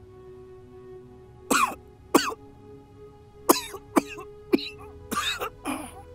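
A person coughing in a fit of about seven coughs, beginning about a second and a half in and coming closer together toward the end, over soft sustained background music.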